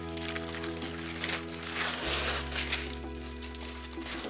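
Clear plastic packaging bag crinkling and rustling as a diamond-painting canvas is slid out of it, loudest in the first half, over steady background music.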